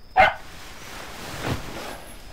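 A beagle puppy gives one short, sharp bark a fraction of a second in, followed by a fainter sound about a second and a half in, heard from a film's soundtrack.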